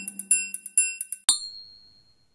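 Logo-animation sound effect: a rapid run of bright, high bell-like chimes, about seven a second, ending just past a second in with a sharp click and a single high ring that fades away.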